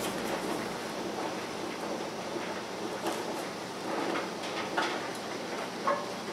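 Steady hiss of hot water in a canning pot as a glass jar is lifted out with jar tongs, with a few faint clinks of metal tongs on glass.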